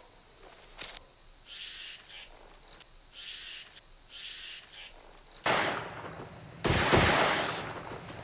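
Two distant gunshots about a second apart, each sudden and dying away in a rolling echo, from hunters' shotguns out of sight in the woods.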